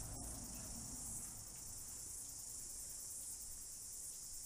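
Insects chirring steadily in a high, even hiss over a low background rumble.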